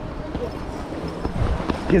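Hurried footsteps on a concrete path: a string of dull thumps, the heaviest about one and a half seconds in.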